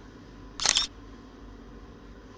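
A single camera shutter click, one short sharp burst about half a second in.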